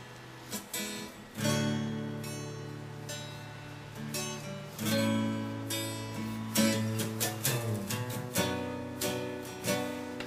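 Instrumental acoustic guitar background music: slowly strummed chords that ring out, with quicker strokes in the second half.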